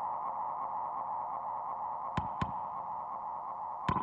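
Electronic music from a live set: a steady, filtered hiss-like drone centred in the midrange, with two sharp clicks about two seconds in and another near the end.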